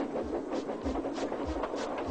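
Steam locomotive chuffing as it pulls away, in regular puffs about three a second, over background music.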